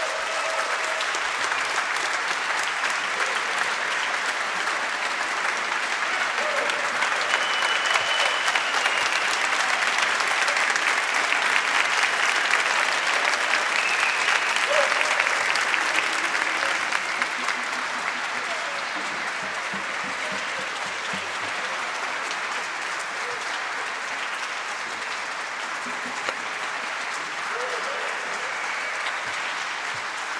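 Large audience applauding, building up to its loudest after several seconds and then easing off slightly toward the end.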